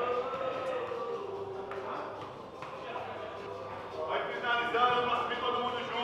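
Men's voices calling out and talking, getting louder about two-thirds of the way through.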